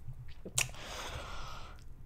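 Quiet mouth sounds close to a handheld microphone: a single short click about half a second in, then a soft breath-like hiss for about a second.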